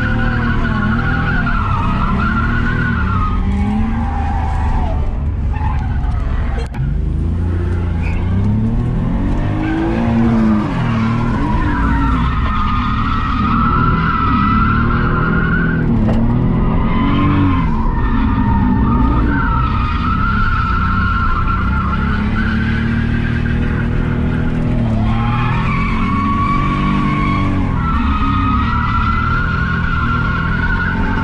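BMW E46 drifting: the engine revs rise and fall again and again while the rear tyres squeal in long stretches as the car slides, heard from inside the cabin. The engine note rises and falls most quickly around the middle.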